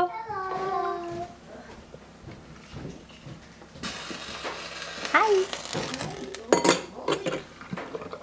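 A metal ladle scooping blanching water from a stainless stockpot, with a splashy hiss in the second half and sharp clinks near the end. A drawn-out spoken "hello" trails off about a second in, and there is a short voice sound a little past halfway.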